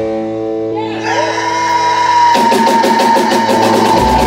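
Live rock band playing: a guitar chord rings out, then a long high note is held over it. About halfway through, the drums and the rest of the band come back in with a steady beat.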